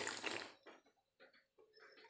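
A person slurping iced fruit drink straight from a bowl, a noisy gulp that ends about half a second in, followed by faint scattered mouth sounds.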